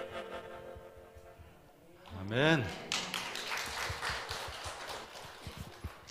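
The last notes of a harmonica solo ringing out and fading, then after a short pause a brief voice and a spell of light, scattered applause.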